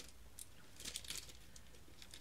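Faint rustling and crinkling of a makeup brush's packaging being opened by hand, in a few short, scattered rustles.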